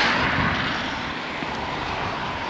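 A car driving away on a wet road, the hiss of its tyres on the wet surface fading.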